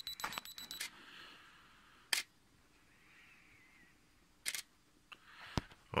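Canon EOS 100D DSLR self-timer beeping rapidly, stopping a little under a second in as the shutter trips. The shutter clicks shut about 1.3 seconds later, ending the exposure. Two more sharp clicks follow near the end.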